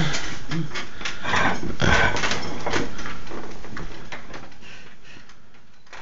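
A person blowing out birthday candles: a series of irregular breathy puffs that fade away toward the end.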